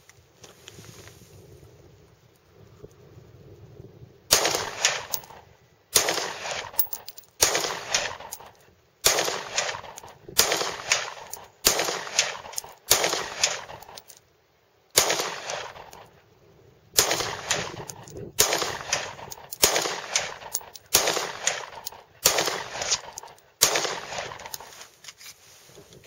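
9mm pistol fired in slow, aimed single shots, about fifteen of them one to two seconds apart, starting a few seconds in. Each shot is followed by a trailing echo.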